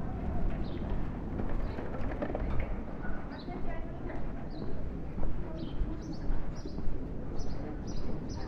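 Small birds chirping in short, high, falling notes, about two a second from roughly three seconds in. Steady street noise and faint voices run underneath.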